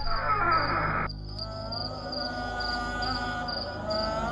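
Crickets chirping steadily, about three high chirps a second, under soft background music. The music's denser opening stops about a second in and gives way to long held tones.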